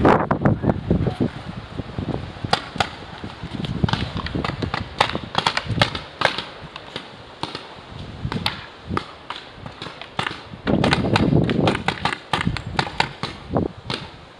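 Paintball markers firing: many sharp pops at irregular intervals, some close together in quick runs. A louder stretch of rustling noise comes about eleven seconds in.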